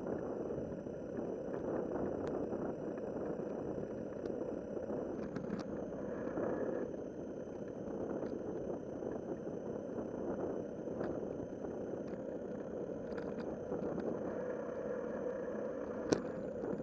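Steady rushing of wind and bicycle tyres rolling on an asphalt path, picked up by a camera mounted on the moving bicycle, with a few faint ticks.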